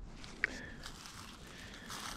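Faint footsteps shuffling through dry fallen leaves on a forest trail, with one brief high-pitched chirp about half a second in.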